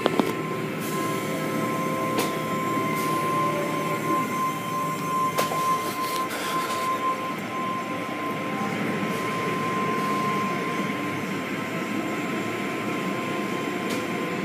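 Automatic car wash heard from inside the car: cloth strips and spinning brushes scrub and slap over the car with water spraying on the glass, over a steady machinery noise with a high whine. A few sharp knocks stand out, one right at the start.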